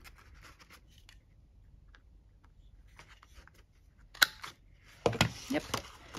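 Scrapbook paper being handled and lined up by hand: faint rustling, then a sharp click about four seconds in and a few louder clicks and knocks about a second later.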